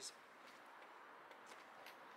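Near silence: faint outdoor room tone, with two faint ticks near the end.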